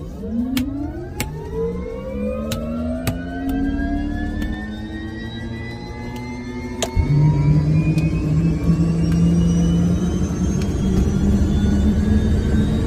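Jet engine spooling up: a whine of several pitches that climbs slowly and steadily, with several sharp clicks along the way. About seven seconds in, a louder, deeper steady rumble comes in suddenly underneath it.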